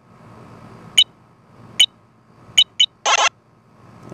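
Phone keyboard app playing its key-press sounds: four short electronic clicks, the last two close together, then a longer buzzy beep near the end.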